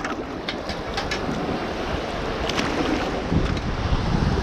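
Wind buffeting the microphone over shallow surf washing in, with a few light clicks.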